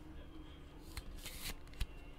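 Trading card and clear plastic card holder being handled: a short sliding swish about halfway through and a sharp plastic click near the end, as the card is slipped into the holder.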